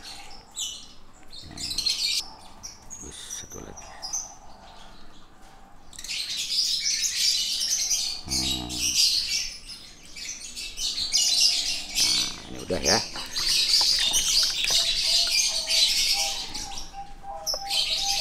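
Many small birds chirping, at first in scattered calls, then about six seconds in a dense, continuous chatter.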